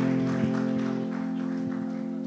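Electronic arranger keyboard holding a sustained chord that slowly fades away, the closing chord of a song.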